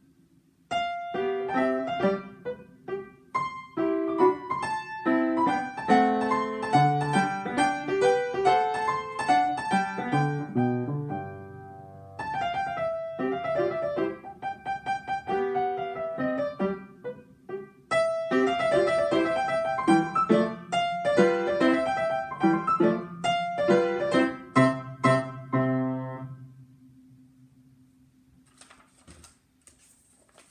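Upright acoustic piano being played, a flowing passage of notes with a brief thinning around the middle. The last chord rings out and fades away about 26 seconds in.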